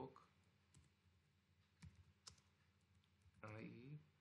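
Faint keystrokes on a computer keyboard: a few separate clicks while a line of code is typed. Near the end there is a short wordless voice sound, louder than the clicks.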